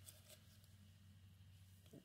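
Near silence: room tone with a low hum, and a faint tick or two of a trading card being slid across the stack just after the start.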